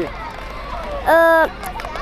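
Children chattering in the background; about a second in, a young child's voice holds one steady note for about half a second, louder than anything else.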